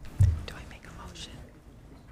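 Quiet whispered speech picked up by a council chamber microphone, after a short, low thump about a quarter second in.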